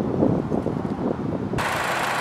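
Wind buffeting the microphone in low, uneven rumbles. About one and a half seconds in, this cuts off abruptly to a steady hiss with a low hum: the 2014 Chevrolet Cruze's 1.4-litre four-cylinder engine idling.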